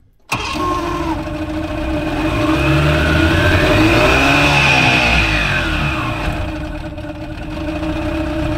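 A small boat's outboard motor catches suddenly and runs, revving up over the next few seconds and easing back toward idle near the end. It is running rich: blue exhaust smoke drifts off it.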